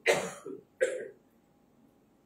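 A man coughing twice, hand over his mouth, into a handheld microphone: two short coughs a little under a second apart.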